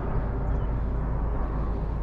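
Steady low outdoor rumble of background noise, with no distinct events.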